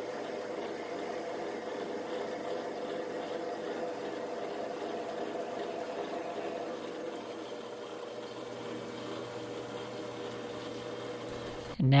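Metal lathe running steadily under power feed with an even mechanical hum, as the threading tool takes a very light spring pass along a single-point-cut thread in O1 tool steel.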